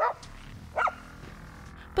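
A dog barking twice, two short barks a little under a second apart.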